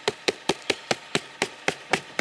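A regular series of sharp clicks or taps, about four to five a second.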